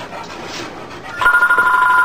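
A steady electronic tone of two pitches sounding together, starting a little over a second in.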